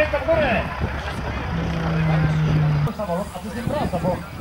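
Biplane engine running at low power as the aircraft taxis, with people talking over it.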